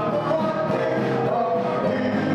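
Gospel music: a group of voices singing held notes over instrumental backing.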